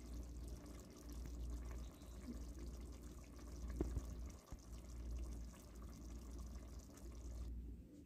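Faint bubbling of egg and potato curry simmering in an aluminium pot, over a steady low rumble, with a small click about four seconds in.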